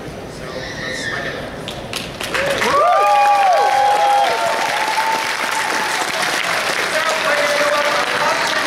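Audience applause and cheering that swell about two and a half seconds in, with several whooping cheers rising and falling over the clapping. The clapping then carries on steadily.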